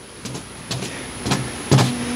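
Paint-loaded round brushes slapping down onto paper on a tabletop: a handful of uneven dull taps, the loudest near the end.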